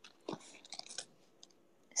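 Faint, brief crackly rustling and scratching against paper, with a soft thump about a third of a second in, dying away about a second in.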